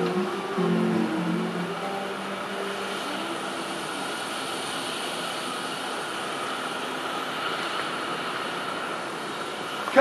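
Song playback dies away over the first few seconds, leaving a steady, distant engine drone for the rest.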